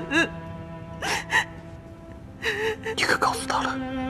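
Sustained bowed-string score music under a person's crying voice: two short gasping sobs about a second in, then a longer wavering cry about two and a half seconds in.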